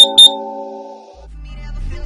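Two short, high electronic beeps in quick succession from an interval workout timer, marking the end of a work interval. They sound over background music with a held chord, which fades about a second in and gives way to a low falling sweep.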